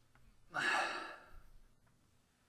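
A person sighs into a close microphone: one breathy exhale about half a second in, fading away within a second.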